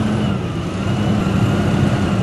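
Heavy diesel dump truck's engine running steadily while the raised bed tips out a load of clay; the engine note dips slightly just after the start, then holds.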